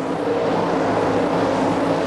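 Winged 410 sprint cars' V8 engines running flat out at a steady high pitch as the leaders race side by side around the dirt-covered banking.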